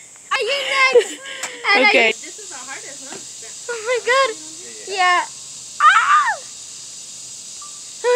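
Young women laughing and giving short, high-pitched, wordless excited calls in about five separate bursts.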